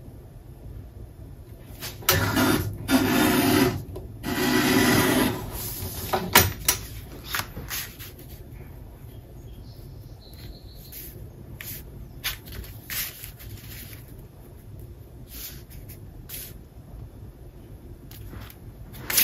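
Sheets of patterned scrapbook paper being handled and laid onto a cardstock page: two louder spells of paper rustling and sliding a few seconds in, then soft taps and rubs as the sheet is pressed flat to test its fit.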